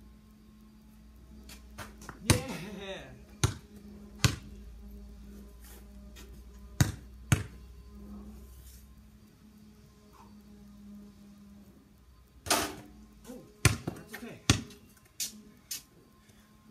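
A basketball bouncing on a concrete driveway and striking the hoop: a series of sharp single thuds, one with a short ring after it, in two groups, one a couple of seconds in and another near the end.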